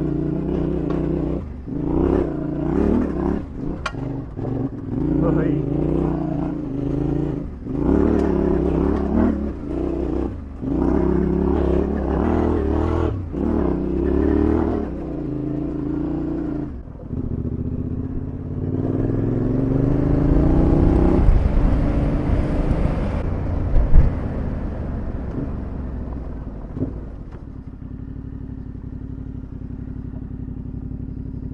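Yamaha Tenere 700 parallel-twin engine under way on a dirt trail: revs rising and dropping with short breaks through the first half as the throttle is worked, then one long rising rev with a rushing noise over it. A sharp knock comes about two-thirds of the way through, after which the engine runs lower and steadier.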